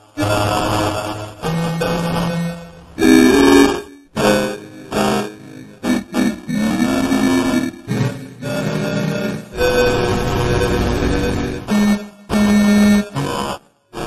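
A run of separate train whistle and horn blasts, one after another, each a steady chord lasting from under a second to about two seconds, with short breaks between. Each blast is at its own pitch, and one a little past the middle bends up and back down.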